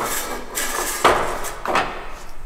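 Pneumatic tyre changer's column and mount head being locked: bursts of compressed-air hiss with a sharp clunk about halfway, then another short burst near the end.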